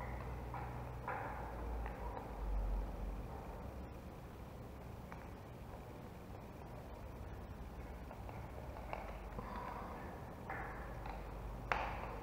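Faint, scattered small clicks and taps from handling a plastic plug insert and a screwdriver while wires are fastened into its screw terminals, a few seconds apart, over a low rumble of handling noise.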